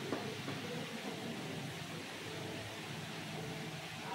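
Steady hiss of room noise with one light click just after the start, from a wooden ruler pressed against a whiteboard while a straight line is ruled with a marker.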